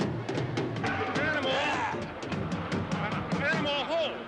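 Drum kit played in a loud, fast drum solo, many quick irregular hits, with short vocal cries over it about a second in and near the end.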